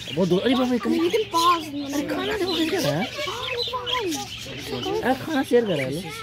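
Budgerigars chirping and chattering over a mix of indistinct human voices and lower, cluck-like calls.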